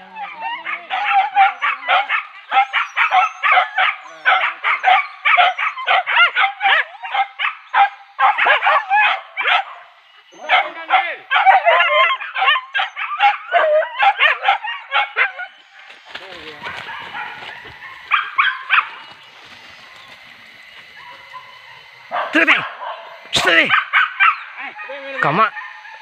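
Hunting dogs yelping and baying in rapid, overlapping calls, the cry of dogs on a wild boar's trail. The calling runs without a break for about fifteen seconds, drops away with one short burst, then starts again near the end.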